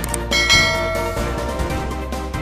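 A bright bell-chime sound effect, of the kind used for a notification bell, rings about a third of a second in and fades within a second, over steady background music. A short click comes just before it.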